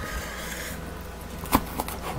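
Chef's knife cutting a habanero pepper on a cutting board: one sharp knock of the blade on the board about one and a half seconds in, followed by a couple of lighter taps.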